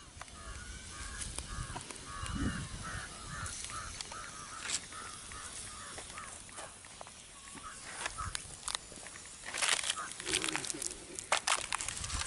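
A bird calling over and over in quick short notes, about three a second, for the first few seconds. In the last few seconds comes a burst of sharp crackles and clicks from the open wood fire and the bamboo skewers holding the roasting fish.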